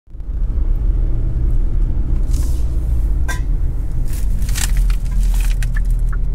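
Steady low road rumble inside a moving car's cabin, with a few brief hissing swells.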